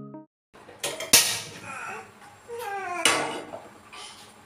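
Kitchenware clattering: crockery and a frying pan handled on a counter and a gas stove, with a sharp clack about a second in and another near three seconds.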